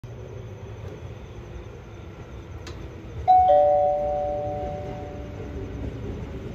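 Two-note chime over a station platform's public-address speakers, a higher note and then a lower one, sounding about three seconds in and ringing out over about two seconds. It is the lead-in to the automated announcement of an approaching train. A low rumble runs underneath throughout.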